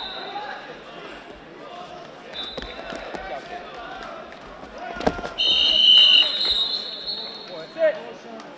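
A thud of a wrestler being thrown onto the mat about five seconds in, followed by long shrill referee whistle blasts. Shouting and chatter from coaches and the crowd run underneath.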